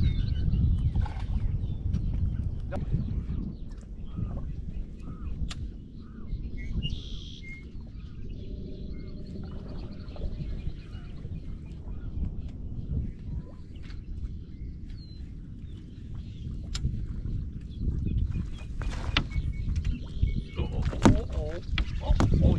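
Outdoor ambience aboard a small fishing boat: a steady low wind rumble on the microphone with water against the hull, broken by scattered light clicks and knocks.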